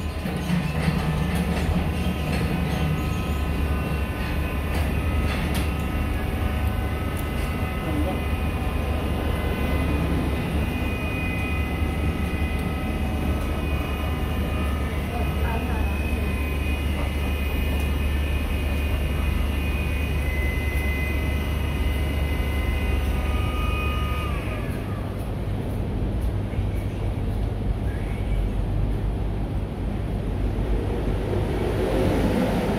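The electric motor of a key-cutting bench machine runs with a steady whir over a low hum. Near the end it is switched off and whirs down in pitch.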